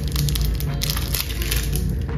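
Dense crackling and crinkling handling noise, many small clicks in quick succession, over steady background music.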